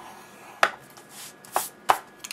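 A plastic scoring stylus worked along a groove of a Scor-Pal scoring board through cardstock: two sharp taps of the tool on the board, about a second and a quarter apart, with short scraping swishes between them.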